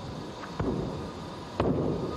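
Hands and feet striking a sprung gymnastics floor during a tumbling pass: two heavy thuds about a second apart.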